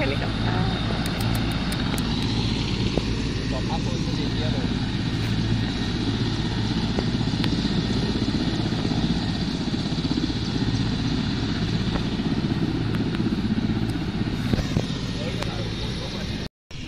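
Large helicopter running on the ground, its turbine engines and turning rotor making a steady drone with a fast rhythmic rotor beat.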